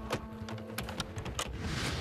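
Irregular sharp clicks and knocks of portable hardwood basketball-floor panels being slid into place and pinned together, with a faint steady low tone beneath.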